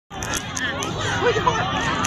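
A large crowd chattering: many voices overlapping in a dense, steady babble.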